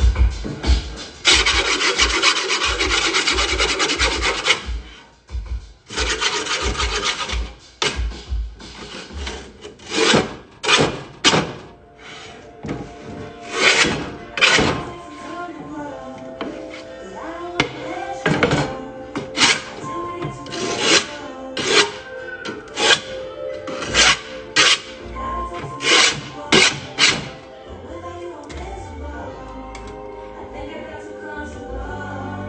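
Scraping and rasping on a skateboard deck: a few seconds of continuous rasping near the start, a shorter run soon after, then single short scrapes about once a second.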